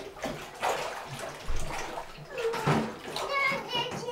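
Bathwater splashing and sloshing in irregular bursts as a small child moves about in the tub. Near the end the child gives a short, high-pitched vocal sound.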